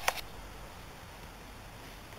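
Faint steady background hiss, with one short sharp click just after the start.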